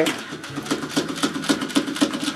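Small battery motor of a Chubby Puppies toy golden retriever running with a steady buzz and rapid clicking as the toy wobbles on a tabletop.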